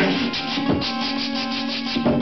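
Human beatboxing into a handheld microphone: rapid hissing, hi-hat-like mouth sounds, about seven a second, over a steady low tone.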